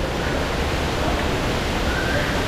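Steady, even rushing noise with a low rumble underneath, unbroken throughout.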